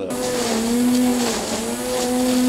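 Corded electric string trimmer running with a steady motor whine, its line cutting through grass and weeds; the pitch dips briefly near the middle.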